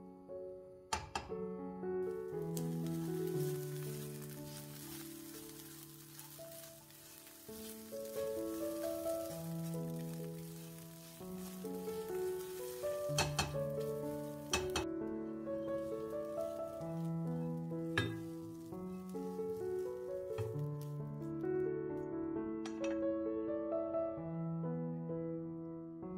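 Diced sausage, peas and corn sizzling as they fry in a nonstick pan, stirred with a silicone spatula that gives a few sharp taps against the pan. The sizzle stops a little past the middle, while soft piano music plays throughout.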